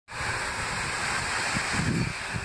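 Steady rushing of wind outdoors, with irregular low buffeting on the phone's microphone.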